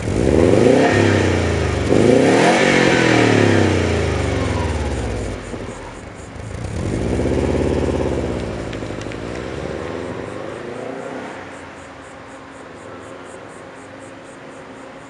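1994 Subaru WRX STi's turbocharged EJ20 flat-four revving through a Fujitsubo exhaust: two blips in the first few seconds and a longer, fuller rev about seven to eight seconds in. The sound then fades as the car pulls away.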